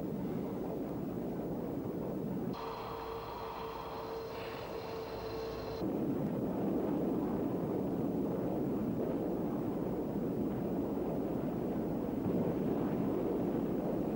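Jet aircraft in flight: a steady rushing noise, with a few steady whining tones in its place for about three seconds near the start.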